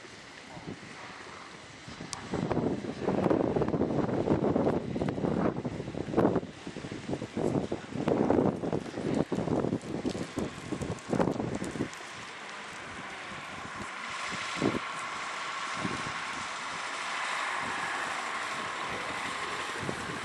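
Wind buffeting the microphone in irregular gusts for about ten seconds, then giving way to a quieter, steadier outdoor hiss.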